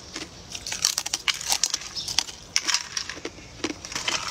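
Thin, brittle clear sheets crackling and crunching in quick, irregular sharp snaps as pieces are broken apart by hand.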